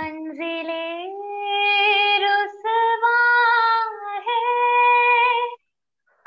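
A young woman singing a Hindi song solo and unaccompanied, holding long notes with vibrato in a few phrases and stopping briefly near the end.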